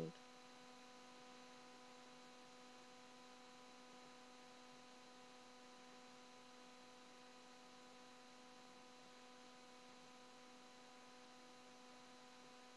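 Near silence with a faint, steady electrical hum made of a few fixed tones.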